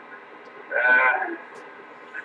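CB radio receiver hiss with a steady level of static, broken about a second in by a brief, half-second voice sound.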